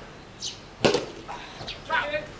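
A single sharp smack about a second in, the loudest thing heard, with a short shouted voice starting near the end.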